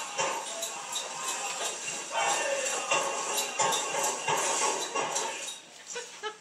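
Powwow music playing, with jingling and rustling as a small fancy shawl dancer spins, dying down just before the end.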